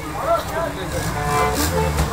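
Several people talking and calling out to one another over a steady low rumble.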